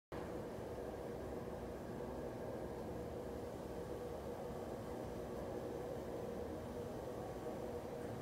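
Motor of an electric projector screen running with a steady hum as the screen unrolls down from its ceiling housing.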